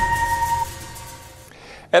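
End of a TV programme's opening theme music: a held note runs for about half a second, then the music drops away to a faint fading tail. A man's voice starts just at the end.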